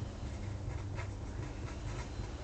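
Pen writing on paper: a few light scratching strokes as digits are written out, over a low steady hum.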